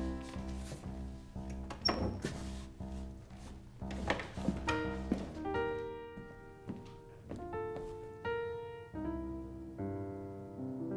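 Piano music of held, ringing notes, with several dull thumps in the first half.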